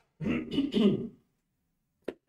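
A man clearing his throat, one rough two-part rasp lasting about a second.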